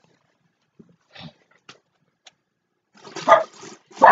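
A few faint rustles and sharp clicks, then a short, loud animal call about three seconds in.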